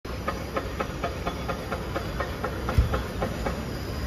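Camera shutter firing in a steady burst, about four clicks a second, with one low thump near the middle.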